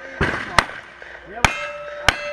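Three gunshots in quick succession, each followed by the ring of a struck steel target.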